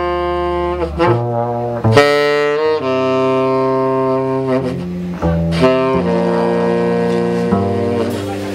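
Live jazz: a saxophone plays long held notes, changing pitch every second or so, over a double bass.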